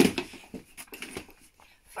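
A folded twin stroller's frame set down onto a wooden floor with a sharp knock, followed by a few light ticks and taps, like heeled footsteps on the boards.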